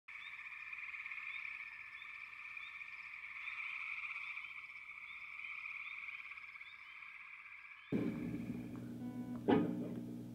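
A steady, high-pitched outdoor animal chorus with small chirps repeating roughly twice a second. It cuts off suddenly about eight seconds in, giving way to a low steady hum from an electric guitar rig, with one sharp click about a second and a half later.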